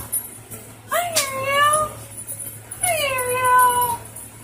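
A small pet's long, pitched cries, two of them, each about a second long. The first comes about a second in and the second near the end, falling in pitch.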